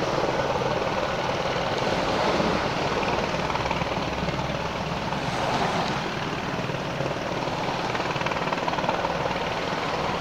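Helicopter hovering low near overhead power lines, its rotor and engine sound holding steady throughout.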